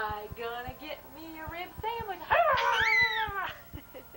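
A baby's high-pitched vocalizing while being bounced: several short squeals and coos in the first two seconds, then a long, loud squeal that falls in pitch about halfway through.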